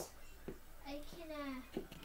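A child's voice, high-pitched and indistinct, about a second in, with a few light clicks.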